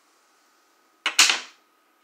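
A domino tile slapped down hard on the tabletop: a sharp clack about a second in, with a second hit just after, dying away within half a second. It is the player's last piece going down to go out ("dominoes").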